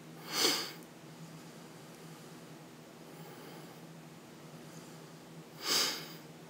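Two short sharp breaths through the nose, one just after the start and one near the end, over a faint steady low hum.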